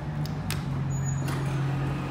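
Elevator machinery humming steadily while the car is being called, with sharp clicks in the first half second from the call button being pressed.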